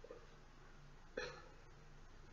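Near silence with faint room tone, broken a little after a second in by one brief vocal sound from a person's throat.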